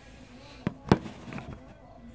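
Two sharp knocks about a quarter of a second apart, the second louder, followed by a few fainter clicks.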